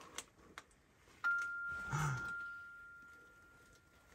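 A noise-making toy doll sounding a single high tone that starts suddenly about a second in and slowly fades over nearly three seconds, after a few small clicks.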